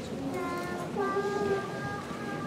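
High-pitched voices holding long, steady notes that change pitch from one note to the next.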